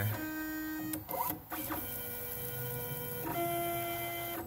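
Stepper motors of a home-built pen plotter driving its belt gantry: a whine that holds one pitch, then jumps to another, several times as the carriage moves from one straight run to the next, with a short sweeping glide and a brief dip just after a second in.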